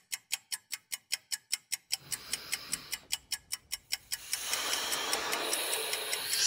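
Ticking-clock sound effect, an even tick at about four to five a second, with a soft hiss coming in beneath it about two seconds in and growing louder after about four seconds.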